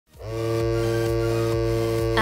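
Tattoo machine buzzing with a steady electric hum, starting up just after the beginning and then holding one even pitch.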